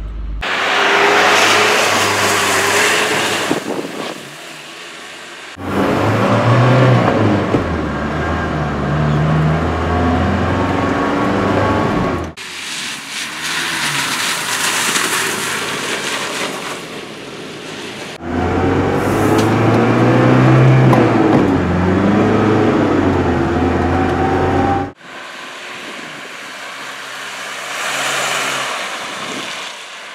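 1987 Mercedes G-Wagen 240GD's four-cylinder diesel engine accelerating, its pitch climbing and dropping back as the manual gearbox is shifted. The sound is cut together from several short clips that break off suddenly, some carrying mostly a rushing road and wind noise.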